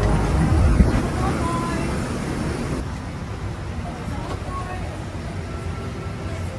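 Aircraft boarding ambience: a steady low rumble with indistinct voices of other passengers. It becomes quieter and duller about three seconds in.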